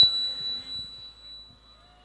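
Thin, steady high-pitched ring from the stage's public-address system, left hanging as the singing stops and fading out over about a second and a half.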